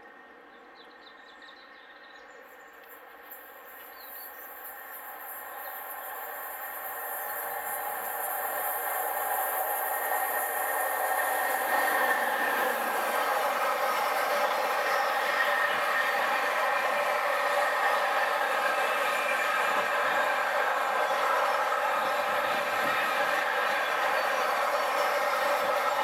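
Intermodal container freight train approaching and passing close by, its rolling noise growing steadily louder over the first dozen seconds and then holding steady as the long line of container wagons rolls past, with a steady multi-tone hum in the noise.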